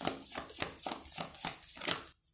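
A deck of tarot cards being shuffled by hand: a quick, uneven run of sharp card slaps, about five a second.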